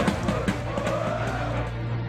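Football supporters chanting over a steady drumbeat, fading out in the first second or so as a music track takes over.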